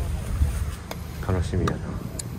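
A man's short spoken filler ('un, ano') over a steady low wind rumble on the microphone, with a single light click just before it.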